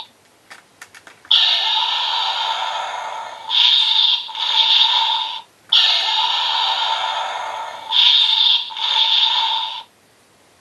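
Electronic finisher sound effect from the DX Ultimate GekiRyuKen toy sword's built-in speaker: a few small plastic clicks, then a hissing energy-slash effect with a steady mid tone, played twice in a row, each about four seconds long with two louder surges in its second half.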